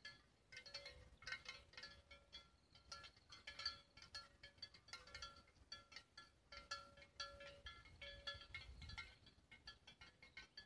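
Cowbells on grazing cows clinking faintly and irregularly, several short ringing strokes a second.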